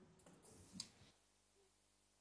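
Near silence: room tone, with one faint click a little under a second in.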